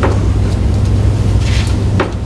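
A steady low hum runs through, with paper rustling as sheets are handled, most clearly about one and a half seconds in.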